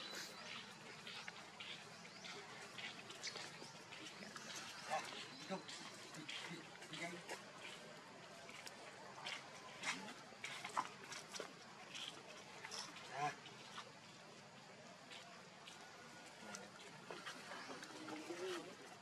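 Faint outdoor ambience with low, distant human voices and many short scattered clicks and rustles, a few louder ones around the middle.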